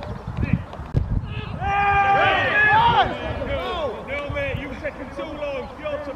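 Several men shouting and calling to one another on an outdoor football pitch, loudest about two seconds in, over a low rumble of wind noise on the microphone.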